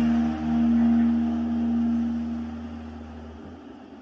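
Ambient background music of sustained, drone-like low tones fading out; the lowest notes stop about three and a half seconds in.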